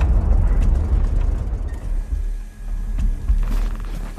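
Cinematic trailer sound design: a deep rumble left over from a boom, slowly dying away, with a few faint mechanical clicks over it.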